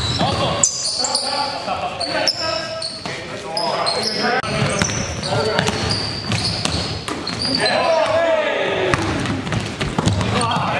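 A basketball bouncing on a hardwood gym floor and sneakers squeaking during live play, with players' indistinct shouts ringing in a large hall.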